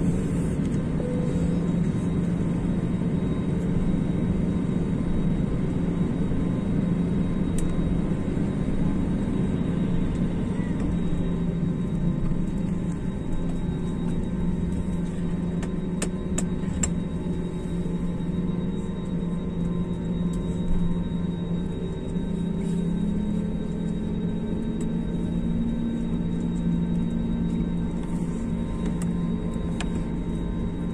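Jet airliner's engines heard from inside the cabin while taxiing: a steady low hum with a faint high whine, rising slightly in pitch about two-thirds of the way through.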